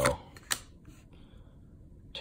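Trading cards handled in a small hand-held stack: one card is moved from the front to the back, giving one sharp click about half a second in and a few faint ticks.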